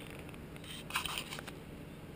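Faint steady outdoor hiss, with a brief scratchy rustle near the middle.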